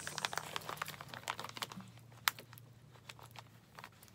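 Clear plastic pocket-letter sleeves crinkling and clicking as they are unfolded and handled: scattered small clicks, with one sharper click a little past the middle.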